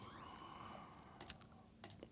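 A few faint, quick clicks at the computer, bunched together a little past a second in, over a low background hum.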